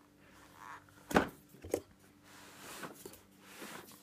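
Handling of a heavy black plastic coin monster box as it is turned over: a sharp knock about a second in, a smaller knock about half a second later, then soft scuffing and rustling.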